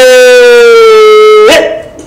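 A long, loud shouted 'heeey' from one person, held on one note that sinks slightly in pitch and breaks off about one and a half seconds in.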